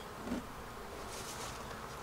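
Honeybees buzzing around an open hive: a faint, steady hum, with a brief soft rustle about a second in.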